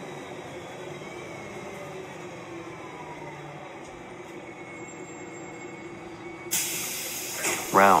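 San Diego MTS city bus running, with a faint whine that falls in pitch, then a sudden loud hiss of air about six and a half seconds in as it pulls up at the stop.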